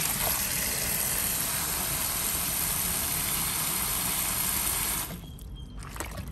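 Kitchen tap water running hard onto Chinese kale leaves in a stainless-steel bowl in the sink. It stops abruptly about five seconds in, leaving trickling and the slosh of a hand moving through the water.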